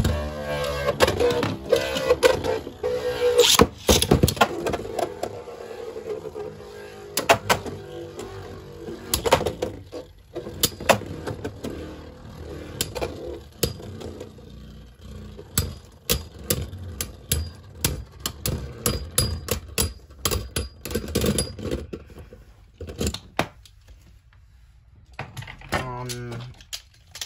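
A Beyblade spinning top whirring on the floor of a plastic stadium, its hum slowly fading as it loses spin, with frequent sharp clicks and knocks. The whirring dies away near the end.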